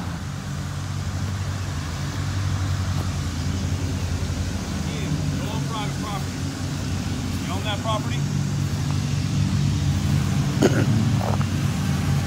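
A police car's engine running close by, a steady low rumble, with faint, indistinct voices a few times over it and a short laugh near the end.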